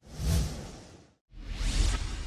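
Two whoosh sound effects from an animated intro: the first swells at once and fades within about a second, and after a brief gap a second one builds to a peak near the end.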